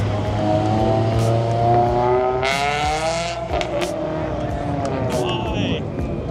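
A car accelerating hard away, its engine note rising steadily in pitch for about three and a half seconds. A short burst of hiss comes near the middle.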